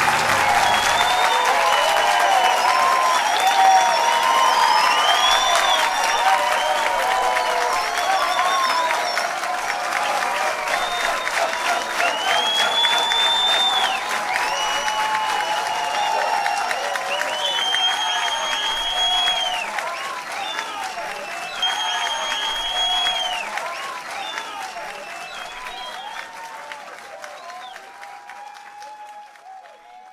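Live audience applauding and cheering after the last guitar notes die away, with high arching whistles and shouts over the clapping. The applause fades out over the last several seconds.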